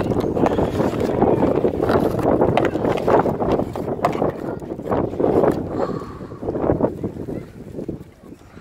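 Snow being brushed and swept by a gloved hand off a motorcycle's handlebars and instrument cluster: an uneven rustling with many short scrapes, easing off near the end, with wind on the microphone.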